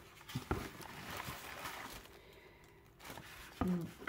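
Faint rustling of crinkle-cut paper packing shred and handling of a cardboard product box as it is lifted out of a shipping carton, with a couple of light knocks in the first second.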